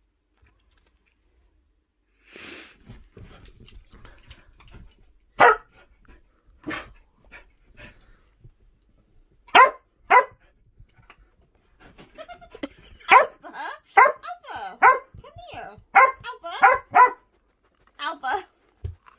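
A dog barking indoors: a few single sharp barks spaced a second or more apart, then a quick run of barks in the last few seconds.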